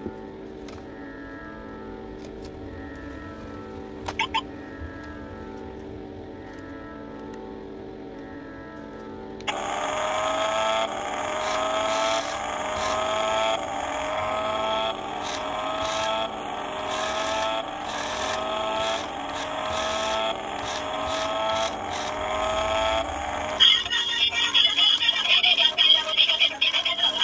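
A repaired toy remote-control car's built-in speaker plays an electronic sound effect over background music: a rising tone repeating about once a second starts about nine seconds in. Near the end it switches to a brighter, choppier sound. The sound shows that the repaired car's circuit board and speaker are working again.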